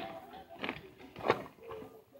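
Quiet gap with faint, brief snatches of a person's voice.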